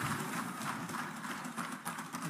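Background sound of a legislative chamber between speeches: a steady hiss with a patter of faint, irregular light knocks.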